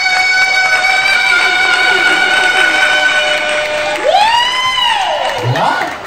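A singer's voice through a microphone and PA, holding one long high note for nearly four seconds, then a swooping slide up and back down in pitch about four seconds in.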